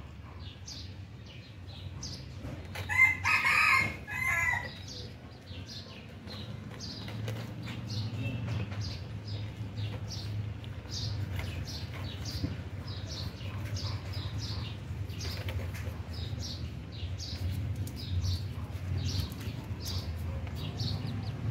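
A chick peeping over and over, short high falling peeps about twice a second, with a louder, longer call about three seconds in. A low steady rumble lies underneath.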